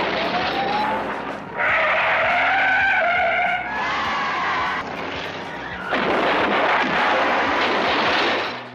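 Demolition-derby action on a film soundtrack: car engines and tyres squealing, with a crowd cheering. The sound changes abruptly at each cut between shots, and the squeal is held in the second to fourth seconds.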